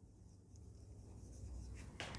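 Marker pen writing on a whiteboard, faint, starting about half a second in.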